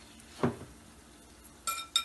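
Kitchenware clinks over faint sizzling of a batter-coated potato wedge frying in oil: a sharp knock about half a second in, then near the end a bright clink of the glass batter bowl that rings briefly.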